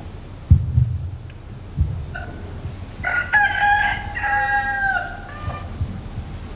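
A rooster crow: one long pitched call starting about three seconds in and lasting about two seconds, held steady and dropping at the end, after a couple of dull thumps in the first two seconds.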